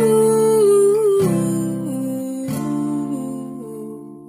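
Acoustic guitar with a capo, three strummed chords about a second and a quarter apart, each left to ring and fading away near the end.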